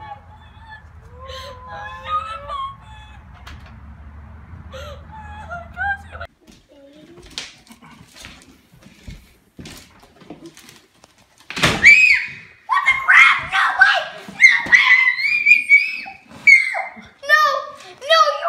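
A girl's high-pitched screams of excited delight on finding a puppy in a gift box, coming in repeated loud bursts from about twelve seconds in. Before them come faint voices over a steady low rumble, then a few small clicks and knocks as the box is handled.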